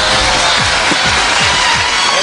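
Studio audience applauding over background music with a run of low drum strokes.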